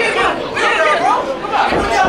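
Crowd of spectators talking and shouting over one another, a dense mix of many voices.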